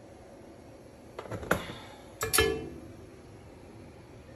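Skillet knocking against the stove grate as it is tilted to spread the oil: a couple of light knocks a little over a second in, then a louder metallic clank about two seconds in that rings briefly.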